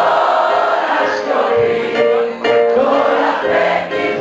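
Live rock band playing, with electric guitars and drums under sung vocals that sound like several voices together.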